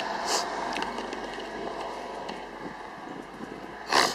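Steady outdoor background hum with a brief hiss early on and a short knock near the end, the kind of rustle and bump that handling a handheld camera makes.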